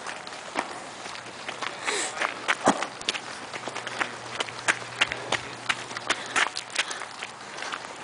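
Footsteps on gravel at a steady walking pace, about two to three steps a second.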